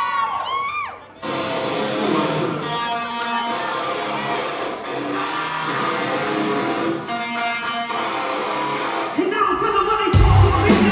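A yell with a sliding pitch in the first second, then a live band's electric guitar starts a song intro with a steady strummed pattern. Near the end a voice comes in over it.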